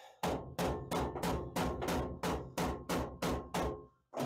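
A hammer striking a new sheet-steel drop-in floor pan in a steady run of about eleven blows, roughly three a second, each with a short metallic ring. The taps work the pan down to seat it against the old floor of a square-body Chevy truck.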